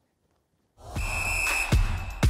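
Near silence, then a short music sting starts abruptly: a held, high whistle-like tone over a low rumble, with a heavy hit near the end.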